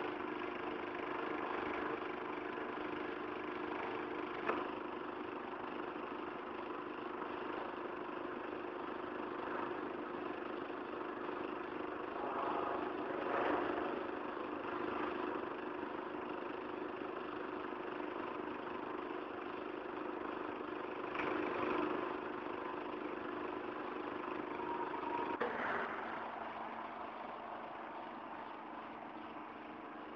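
Industrial machinery running steadily in a metal foundry: a constant drone with a steady hum under it, swelling briefly a few times. A sharp click about four seconds in, and the hum shifts pitch near the end.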